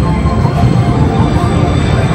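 Busy indoor amusement-hall ambience: a loud, steady low rumble with indistinct crowd voices and faint tones over it.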